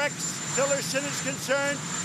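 A man speaking in English over steady background noise, with a thin, steady high-pitched tone underneath.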